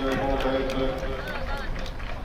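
Several voices on the field calling and shouting at once, cheering a touchdown, with a few sharp short sounds among them.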